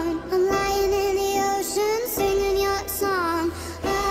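Sped-up pop song: a high lead vocal, raised in pitch by the speed-up, sings held, gliding notes over a steady low bass, with short breaks between phrases.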